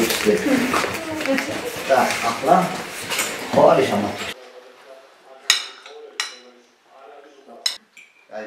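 Forks and spoons clinking on china plates during a meal, with three sharp separate clinks in the second half. The first half is busier table clatter under overlapping voices.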